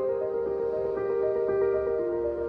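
Soft, slow background music with sustained notes, new-age in style.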